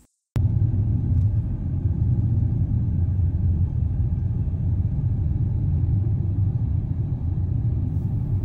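Steady low rumble of a car being driven, heard from inside the cabin: road and engine noise, starting abruptly just after the start.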